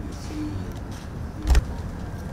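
Room noise of a meeting room with a steady low rumble, and a single short thump about one and a half seconds in.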